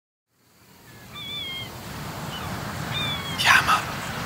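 Opening of a mix intro fading in from silence: a low rumble with a few short, high, thin gliding calls, and a louder rasping burst shortly before the end.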